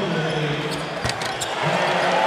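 A basketball bouncing on a hardwood court during live play, in a large arena with crowd noise. A low voice is held underneath.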